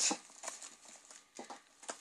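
Light rustling of paper with a few soft taps and clicks as a handmade paper journal is handled and a tag is drawn out of one of its pockets.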